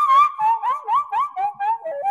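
Daegeum (Korean bamboo transverse flute) playing a sanjo melody with no drum underneath: a string of short rising scoops, about four a second, stepping down in pitch through the phrase.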